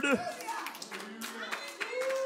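Church congregation clapping: irregular, scattered handclaps from several people, with faint voices underneath.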